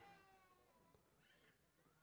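Near silence: faint room tone, with a very faint pitched sound that falls slightly in pitch through the first second.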